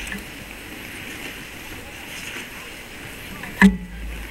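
Ice rink ambience: a steady hiss of many skate blades scraping and gliding over the ice, with faint crowd voices, and one sharp knock near the end.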